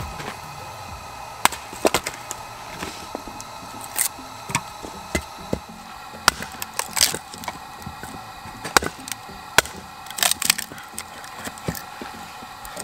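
A Gränsfors Bruks Small Forest Axe splitting firewood on a stump: about a dozen sharp chops and cracks at irregular intervals as the blade bites into the log and splits it.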